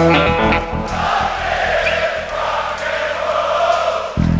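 Live hard rock: an electric guitar phrase ends about a second in, then a large concert crowd sings and chants along in unison over a sustained low bass note.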